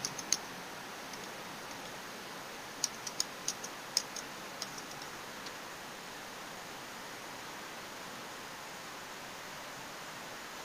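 Computer keyboard keys typed in a short run of about eight clicks, over a steady background hiss, as a password is entered. A couple of sharp clicks at the very start, from a mouse clicking into a login field.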